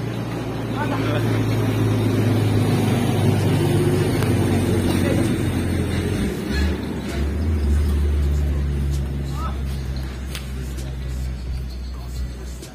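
A motor engine hums low and steady, its pitch dropping lower about six seconds in. A few sharp shuttlecock hits from a badminton rally come through over it.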